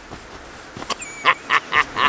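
A man laughing in a quick run of short bursts, about four a second, starting about a second in. A faint click and a brief squeak come just before it.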